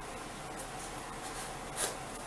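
A scissor blade slitting the packing tape on a small cardboard box: quiet scraping, with one short, sharper cut near the end.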